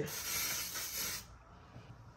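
Aerosol root spray hissing in one burst of a little over a second, then stopping.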